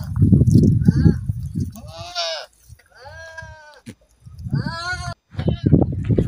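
Goats bleating: about four short, wavering bleats, the longest in the middle, over a low rumble of noise in the first two seconds.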